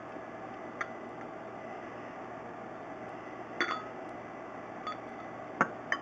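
A few faint, sharp glassy clicks, four in all and spread out, over a steady low hiss.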